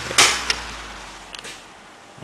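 A sudden short rush of noise and then a sharp click as objects are handled on a cluttered workbench, followed by a few faint ticks, over a faint low hum that fades away.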